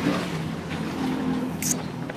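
An engine running steadily, a low hum that shifts slightly in pitch, with voices in the background.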